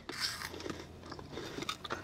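Faint crunching of Cheez-It White Cheddar Puff'd crackers being bitten and chewed, a scatter of small crisp ticks.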